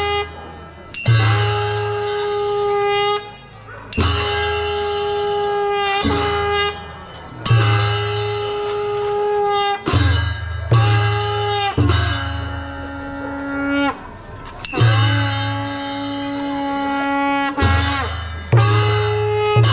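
Traditional Newar festival music: a wind instrument plays long held notes in phrases of a few seconds, with short breaks between them. Two phrases after the middle drop to a lower note. Barrel drums strike at the start of several phrases.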